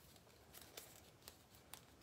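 Near silence, with a few faint clicks and rustles of cotton fabric strips being gathered and pressed onto a foam egg by hand.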